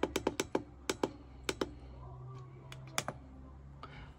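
Button clicks on a diesel parking heater's LCD control panel: a quick run of presses in the first second and a half, then a couple more around three seconds in.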